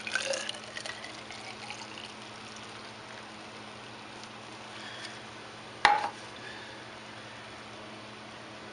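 Wort being poured from a metal cup into a plastic hydrometer test jar, the splashing fading away over the first two seconds. About six seconds in there is a single sharp knock.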